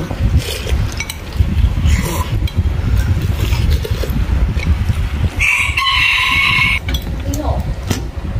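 A rooster crowing once, a single call of about a second and a half starting about five and a half seconds in, over a steady low rumble.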